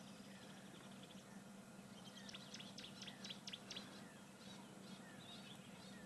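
Faint bird chirps: a quick run of short, high calls about two to four seconds in, over a faint steady hum.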